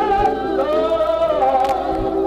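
Slow gospel hymn sung by several voices, with long held notes that waver with vibrato.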